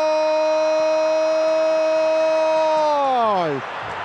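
A man's voice holding one long, level drawn-out note, which slides steeply down in pitch and breaks off about three and a half seconds in.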